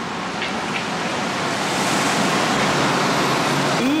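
A steady rushing noise with no distinct tone, growing louder from about a second and a half in and holding there.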